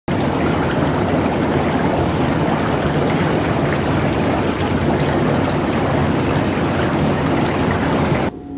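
Water rushing and churning steadily in a bathtub full of bubble-bath foam.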